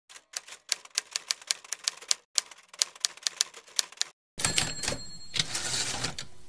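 Typewriter sound effect: keys clacking in quick, uneven strokes for about four seconds, with a short pause about two seconds in. It is followed by a louder, noisier stretch with a faint high ring near the end.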